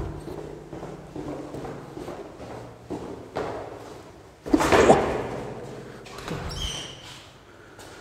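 Footsteps going down a stairwell, then a loud clunk with a ringing echo about halfway through as a metal door is opened, followed by a short high squeak.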